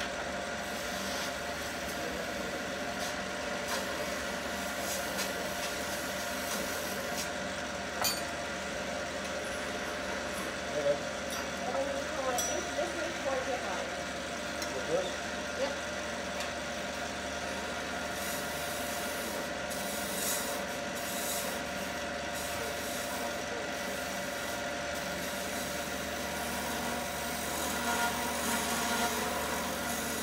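Wood lathe running with a steady motor hum while a turning tool cuts and scrapes along a spinning wooden mallet handle, with a few brief sharper catches.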